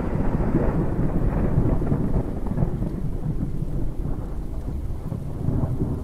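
Thunderstorm sound: a continuous low rumble of thunder over steady rain, loud and even.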